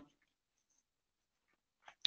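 Near silence: room tone in a pause between spoken phrases.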